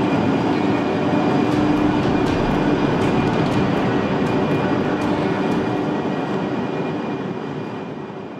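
Train running: a steady, dense rumble with a constant hum and a few faint clicks, slowly fading out over the last couple of seconds.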